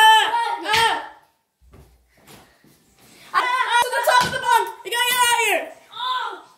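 A child's high-pitched voice shouting or chanting without clear words, in two stretches: a short one at the start and a longer one from about three seconds in until near the end, with a quiet gap between.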